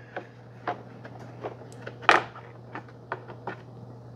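Light clicks and knocks from the plastic coffee grind separator of a Breville Barista Express being lifted off its drip tray, with the loudest knock about two seconds in. A steady low hum runs underneath.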